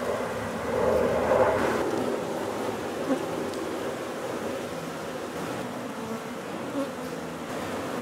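Honey bees buzzing in a dense, steady hum over an open hive of a strong colony, swelling for a moment about a second in.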